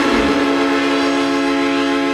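Electric guitar chord held and ringing steadily at the close of a short rock intro.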